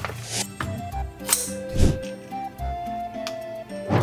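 Background music: a light melody of held notes over a regular low beat.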